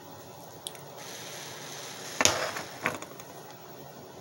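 A hand-held lighter clicking twice, about two and three seconds in, with a brief rough scrape after the first click, while a smouldering wooden cleansing stick is being lit.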